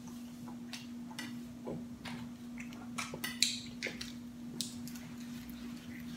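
Scattered small clicks, crinkles and eating sounds at a meal table, among them a plastic water bottle being handled, the loudest crinkle about three and a half seconds in. A steady low hum runs underneath.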